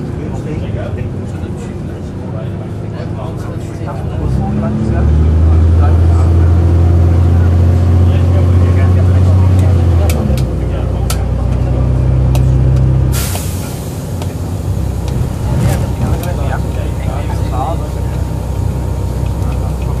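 Cummins diesel engine of a Volvo Olympian double-decker bus, heard from the upper deck as the bus drives: it pulls harder with a deep, loud drone from about four seconds in, the note changes around ten seconds in, and eases off near fourteen seconds. About thirteen seconds in a sudden hiss begins and carries on.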